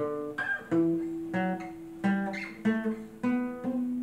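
Acoustic guitar playing a slow picked ornamental run, about eight single notes, each left ringing over the next, with a low note sustained beneath them. The last note rings on past the end.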